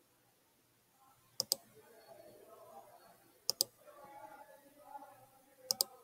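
Computer mouse button clicks, three quick pairs about two seconds apart, as lines are picked on screen.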